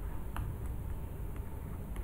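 Plastic stylus nib tapping and scratching on a graphics tablet while writing, with one short click about a third of a second in and fainter ticks after it, over low room noise.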